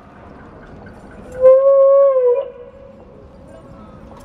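A public-address loudspeaker's feedback howl: one loud held tone about a second long, starting about a second and a half in, wavering slightly and dropping in pitch as it cuts off.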